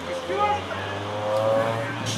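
Voices shouting drawn-out calls across a baseball field, one long held call near the end, over a steady low hum.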